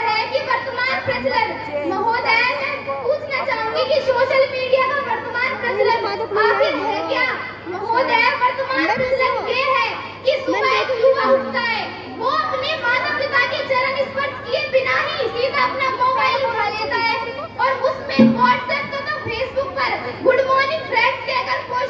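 Speech only: a girl speaking continuously into a microphone, amplified over a public-address system.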